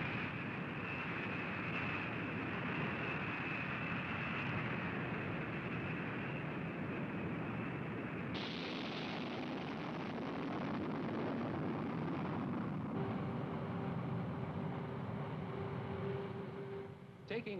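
Jet engines of B-52 Stratofortress bombers at takeoff power: a steady loud roar with a high whine over it. The sound changes abruptly about eight seconds in to a brighter roar, and a steady hum joins in near the end.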